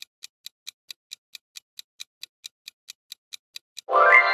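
Clock-ticking countdown sound effect, evenly spaced sharp ticks about four or five a second. Near the end a bright pitched chime sounds as the ticking stops.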